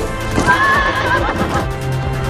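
A horse whinnying once, a wavering call under a second long, over music with held notes.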